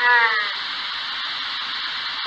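Steady hiss of a ghost-radio (spirit box) sweep, with a short high-pitched voice-like fragment that falls slightly and fades out in the first half second.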